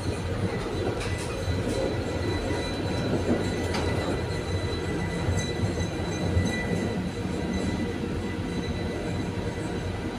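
Konstal 805Na tram running between stops, heard from inside the passenger compartment: a steady low rumble of wheels on rails with a thin, steady high whine over it. A few short clicks come about a second in and again between three and four seconds in.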